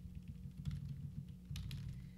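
A few scattered computer keyboard key clicks over a steady low hum.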